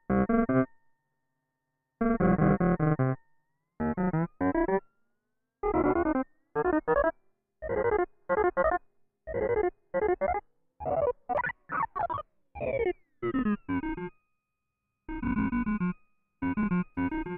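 Synthesizer notes fed through a Moog Moogerfooger MF-104M analog bucket-brigade delay on a multiplied long delay time: a string of short, chopped bursts of gritty, dirty delay repeats. Here and there the pitch slides as the delay time knob is turned.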